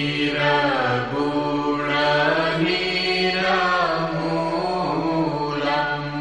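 Devotional vocal chanting in sung phrases of a second or two over a steady drone accompaniment.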